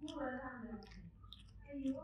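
A person's voice with a few clicks between its sounds.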